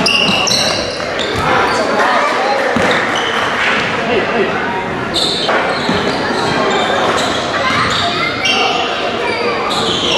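Live basketball game in an echoing gym: the ball bouncing on the hardwood and sneakers squeaking, over a steady mix of voices from players and spectators.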